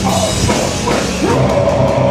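Metallic hardcore band playing loud and live, with distorted electric guitars, bass and a drum kit.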